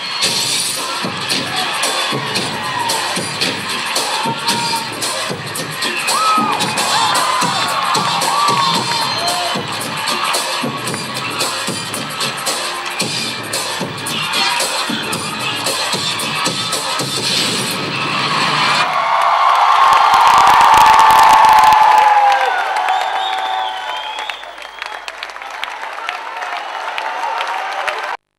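Dance music with a steady beat playing over a hall's sound system while an audience cheers and shouts. About nineteen seconds in the beat drops out and the cheering swells to its loudest, then fades near the end.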